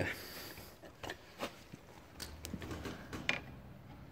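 Faint scattered clicks and rustling of a plastic cable tie being fitted and handled around seat wiring, with about five separate sharp ticks, the strongest near the end.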